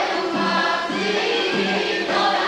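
Armenian folk ensemble performing a traditional wedding song: voices singing together over instrumental accompaniment, with a low note pulsing about twice a second.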